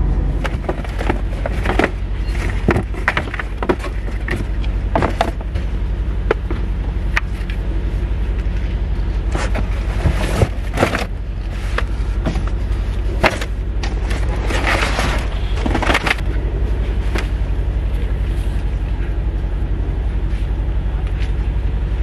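Flattened cardboard boxes being handled, carried and tossed, giving scattered knocks, scrapes and rustles, most of them in the first two-thirds. A steady low rumble runs underneath throughout.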